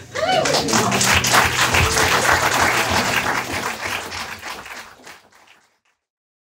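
Audience applauding, a dense patter of hand claps that starts just after the music stops and fades out about five seconds in.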